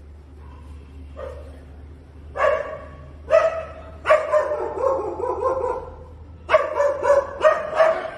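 A dog barking and yelping in short calls. One longer, wavering call comes in the middle, and a quick run of four barks follows near the end.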